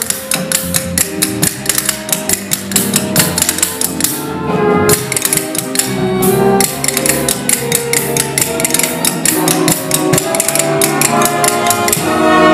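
Tap shoes clicking in a fast, steady rhythm over a band playing, as in a tap dance number; the taps thin out for a moment about four seconds in.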